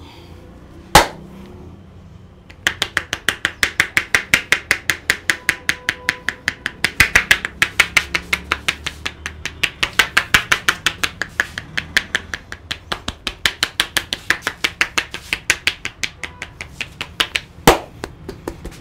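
Barber's palms-together hand tapping on a customer's head: a rapid, even run of sharp slapping claps, about five a second, that starts a few seconds in and runs on. It is preceded by one single loud sharp crack about a second in, and another loud strike comes near the end.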